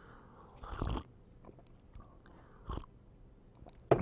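A man sipping a drink from a mug and swallowing, with two short, louder swallowing or mouth sounds, one about a second in and one near three seconds.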